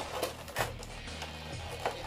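Cardboard and plastic of a Funko Pop window box clicking and scraping as the figure is pushed back inside, a few sharp clicks over steady background music.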